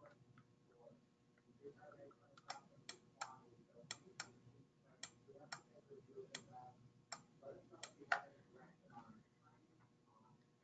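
Near-silent room tone broken by about a dozen sharp clicks at irregular intervals over the middle few seconds, from a computer being worked by hand (key and button presses); the loudest click comes a couple of seconds before the end.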